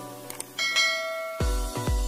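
Subscribe-animation sound effects: a couple of light clicks, then a bright notification-bell chime ringing about half a second in. Electronic music with a heavy bass beat, about two beats a second, kicks in near the end.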